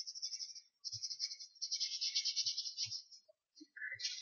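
Faint scratchy strokes of a drawing tool rubbed back and forth across a surface while colouring, in three runs, with a few soft low knocks.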